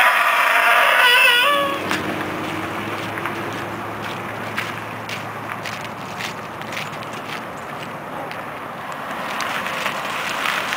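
A woman's loud, wavering wail for about two seconds, then quieter outdoor background with scattered light clicks and taps.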